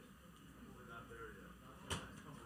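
Faint room noise with faint, unclear voices, and a single sharp knock just before the end.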